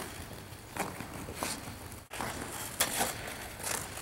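Figure skate blades on ice: several short scrapes as the skater pushes off, over steady rink noise, with a brief break in the sound about halfway through.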